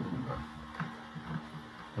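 Low, steady hum from an electric guitar's amplified signal chain, with faint, irregular soft sounds over it.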